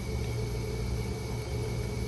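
Steady low mechanical hum with a faint constant high whine above it, from running electrical equipment.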